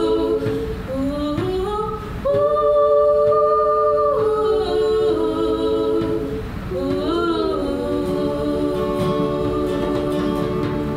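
Women's voices singing a song together in harmony, holding long notes that slide from one pitch to the next.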